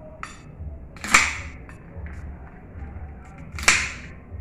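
Cooked blue crab shell being cracked and pulled apart by hand and fork, with two sharp cracks, one about a second in and one near the end.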